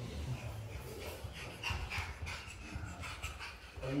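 Soft breathing and rustling close to the microphone, with faint whispered sounds and a low rumble underneath, as worshippers sit between two prostrations of the prayer.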